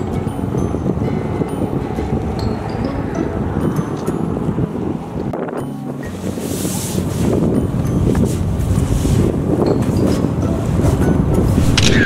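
Wind buffeting the microphone in uneven gusts, loud and low. Background music plays faintly underneath.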